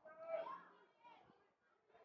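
Faint, distant shouting voices: one drawn-out call in the first half second, and a shorter one about a second in.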